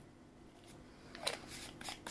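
Handling of a plastic dropper and a plastic minoxidil bottle: after about a second of quiet, a few small clicks and rustles of plastic.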